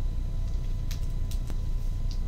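Steady low background hum, with a few faint, short plastic ticks and rustles as a trading card is worked into a soft sleeve and top loader.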